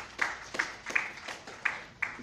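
Scattered handclaps from a small audience: about five separate, irregular claps in two seconds rather than a full round of applause.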